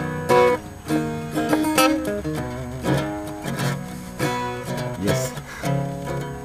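Acoustic guitar music: chords strummed and notes plucked in a steady rhythm.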